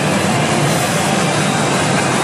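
Loud, steady wash of noise from a pachinko machine in play: its effects sound over the general din of a pachinko parlour, with no single event standing out.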